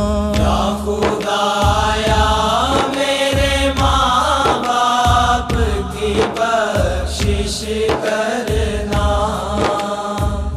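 Islamic devotional dua in the naat style: a melodic, chant-like vocal passage between sung lines, over a steady low drone and regular percussive beats about one and a half a second.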